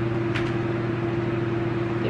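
A steady mechanical hum, a low drone with a second, higher constant tone over an even hiss, with one light click about half a second in.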